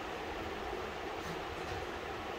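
Steady, even background room noise with no distinct knocks, barks or voices.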